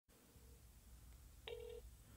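Faint low hum on a telephone line, with one short beep about one and a half seconds in.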